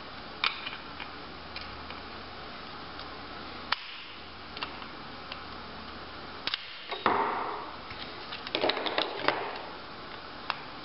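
Plastic clicks and snaps as a flathead screwdriver pries at the clips of a plastic blend door actuator housing, working them to break off. They come singly at first, with a louder snap just after seven seconds and a quick cluster of clicks around nine seconds.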